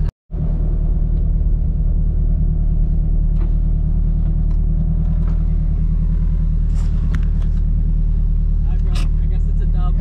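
Turbocharged Acura RSX's four-cylinder engine running steadily at low revs with no revving, a low drone heard from inside the cabin. A few faint clicks come in the second half.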